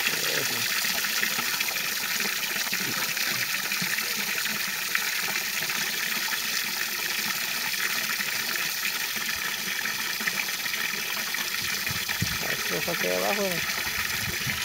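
A steady, even high hiss runs through the outdoor scene, with a short wavering call near the end.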